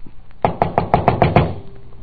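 Knuckles knocking on a door, a radio-drama sound effect: a quick run of about eight raps beginning about half a second in. The knock goes unanswered.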